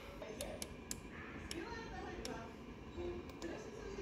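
A built-in electric oven's control panel clicking as its timer is set to five minutes: a scatter of short, sharp ticks, irregularly spaced, a few a second.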